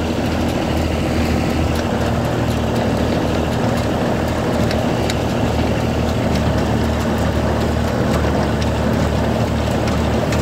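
Ford Dexter tractor's engine running steadily under load while it drives and tows a Massey Ferguson 15 small square baler picking up hay, with the baler's mechanism rattling along beneath the engine.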